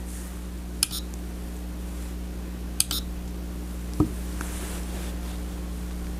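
Button presses on a Chronos GX digital chess clock: two short, sharp clicks about two seconds apart, then a softer knock about four seconds in, as the clock is set to a tournament mode. A steady low hum runs underneath.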